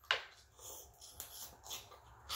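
Close-up eating sounds over a seafood boil: a sharp wet mouth smack just after the start, then soft, intermittent chewing and small clicks from fingers picking at shellfish.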